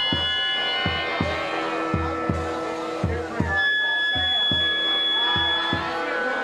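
Live band playing: a melodica blows sustained chords, then a long held note from about three and a half seconds in, over electric guitars and a steady bass drum beat.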